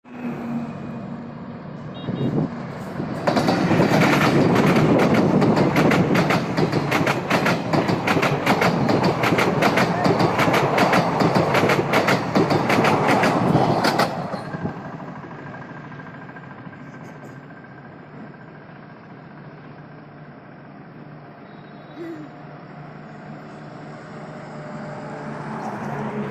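Indian Railways passenger train passing close by at speed, its wheels clattering rapidly over the rail joints in a loud rush that lasts about ten seconds and then cuts away. After that comes a quieter steady rumble of road traffic.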